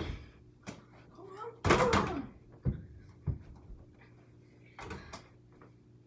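A small ball knocking against an over-the-door mini basketball hoop's backboard and the glass-paned door it hangs on, rattling the door, then several lighter knocks as it drops and bounces. A short vocal exclamation comes with the loudest knock, about two seconds in.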